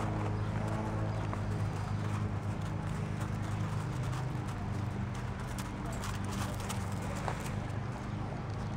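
Pea gravel crunching and clicking under footsteps in irregular bursts, over a steady low hum.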